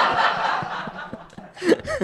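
Audience laughing together at a joke, the laughter fading away over the first second and a half, with a few short chuckles near the end.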